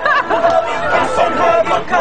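Several men's voices at once, chanting and vocalising together as an a cappella group, with no instruments.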